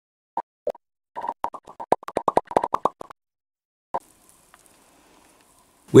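Intro sound effect: a quick string of short pitched plops, like popping bubbles, coming about five a second and stopping after about three seconds, with one last plop near four seconds. A faint hiss and a faint steady tone follow.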